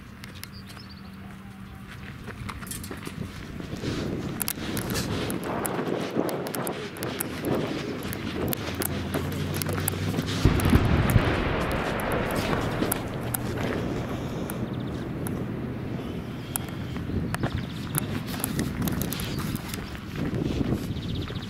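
A wheeled armoured vehicle's engine running steadily, with footsteps on rubble-strewn ground and a loud low boom about halfway through.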